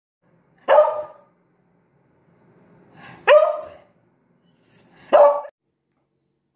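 Beagle barking three times, a couple of seconds apart, each bark short and loud.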